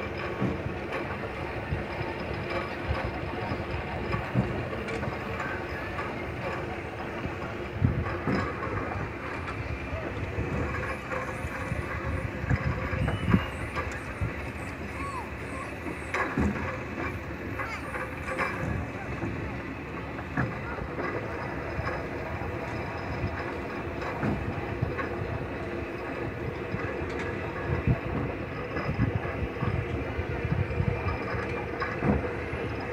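Rockin' Rabbits kiddie track ride car rolling along its steel track: a steady motor hum and rumble, with occasional knocks and clatter. Voices are heard in the background.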